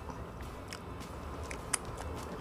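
Faint chewing of a mouthful of juicy turbo-broiled chicken, with a few soft wet mouth clicks in the second half.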